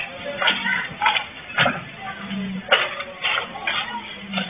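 Background music with sharp percussive hits about every half second and short low notes between them.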